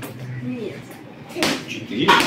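A rubber gymnastics ball bouncing once on a hard floor, a single sharp slap about one and a half seconds in.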